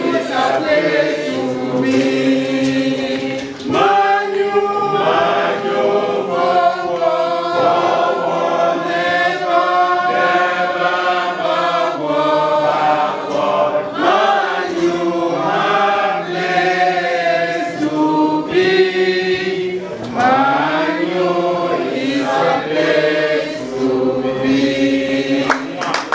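A group of people singing a song together in chorus, led by a man's voice through a microphone, with held notes that rise and fall.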